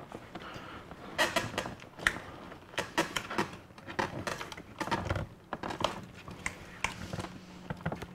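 Hands flexing and pressing the torn edges of a flexible plastic bumper cover: irregular small clicks, taps and creaks of plastic being handled and bent.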